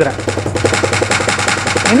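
Fast, even roll of drumstick strikes on an electronic percussion pad, its drum sound retriggering many times a second at a steady level.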